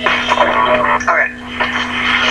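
A man speaking in TV broadcast audio, with a steady low hum underneath.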